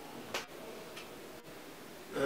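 A pause in speech with faint room hiss, broken by one short sharp click about a third of a second in and a fainter tick about a second in.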